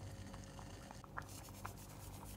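Vegetable broth pouring into a pan of simmering lentils in tomato sauce. From about a second in there is a light pattering of the thin stream hitting the liquid, with a few small bubbling pops.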